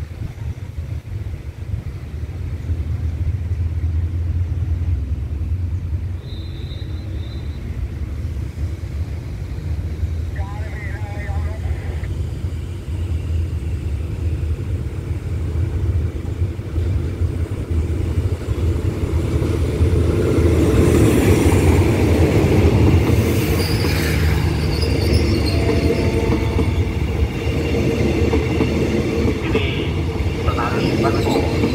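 Diesel-hauled express passenger train pulling into a station and rolling slowly past close by. A deep engine rumble runs throughout, and from about twenty seconds in it grows louder and busier as the locomotive and coaches come alongside.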